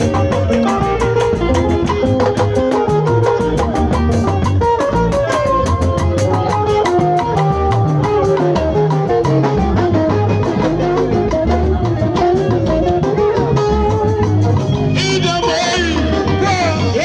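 Loud, continuous Ika band music with drums and a steady bass beat under melodic instrument lines; a singing voice comes in near the end.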